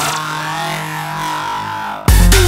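Electronic dance track in a breakdown: a sustained synth drone of several held tones with a slow sweep above it and no drums.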